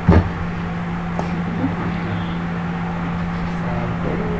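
Steady low hum over background noise, with a sharp click just at the start and a fainter click about a second in.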